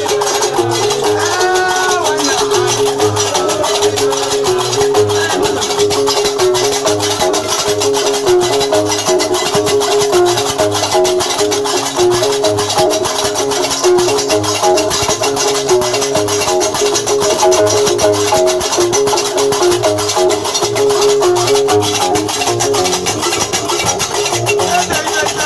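Algerian Diwan (Gnawa) music: iron qraqeb castanets clattering in a fast, steady rhythm over a repeating low bass line that fits the plucked guembri lute.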